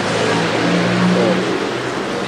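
A motor vehicle engine running: a steady low hum over a rushing noise, its pitch rising slightly and growing stronger about half a second in.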